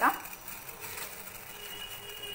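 Water boiling in a steel saucepan on the stove: a steady bubbling hiss.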